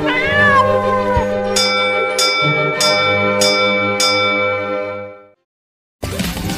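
A cat meows once over steady intro music. Then come five ringing chime-like notes about 0.6 s apart, and the music fades out shortly before the end.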